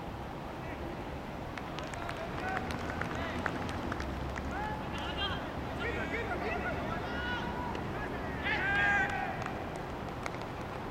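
Cricket players' voices calling out across the field in short scattered shouts, too distant to make out words, the loudest a shout a little before the end. A steady outdoor low rumble runs underneath.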